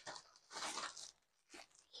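Faint crinkling rustle of plastic packaging being handled, lasting about half a second from roughly half a second in, with a couple of light ticks around it.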